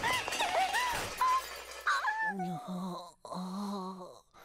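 Cartoon crash sound effect: a noisy crash and clatter, with high sliding cries over it for about the first two seconds. Then a character's wordless groaning voice.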